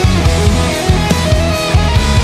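Instrumental passage of a heavy rock song: electric guitar and bass over a steady, driving drum beat.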